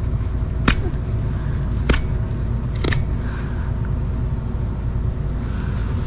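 Three sharp clicks of a hoof-trimming tool working on a held horse's hoof, about a second apart, over a steady low rumble.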